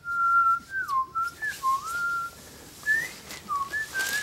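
A person whistling a short tune: one clear note that holds, dips and slides up and down in several short phrases.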